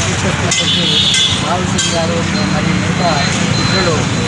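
A man speaking over a steady low rumble of road traffic.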